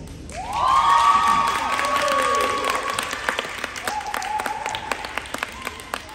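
A small group clapping and cheering, with long high-pitched whoops over the sharp claps. One whoop rises in under a second in and holds for about two seconds, and a second, lower one follows near the middle. The claps thin out toward the end.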